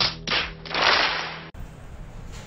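Audience applause from an inserted clip, in a few swells with the loudest about a second in, that cuts off abruptly about one and a half seconds in. Quieter room sound follows.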